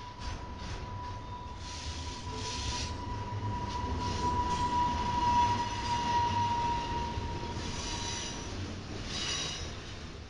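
Double-stack intermodal freight train rolling past at close range: a steady low rumble of the wheels and cars, with a thin, steady high-pitched wheel squeal that grows louder about halfway through and fades out near the end.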